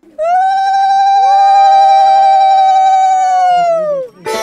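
Conch shells (shankha) blown during a puja: one loud, long, steady note held nearly four seconds, bending up as it starts and sagging as it ends, with a second, lower conch note joining about a second in.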